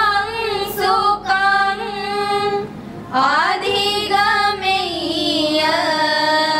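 A group of girls singing together in high voices, with a short break about three seconds in before the singing goes on.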